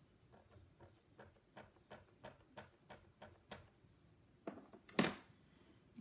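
Light, faint taps of a handheld ink pad dabbed onto a clear photopolymer stamp, about three a second, followed by two sharper, louder knocks about four and a half and five seconds in.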